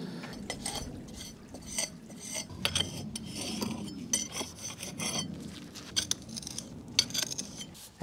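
A stiff brush scrubbing over brick mortar joints in many short, irregular strokes, sweeping off cement that has partly set: the clean-up stage of pointing brickwork.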